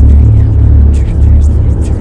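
A loud, deep rumbling sound effect with crackling noise above it, starting abruptly just before and easing slightly near the end.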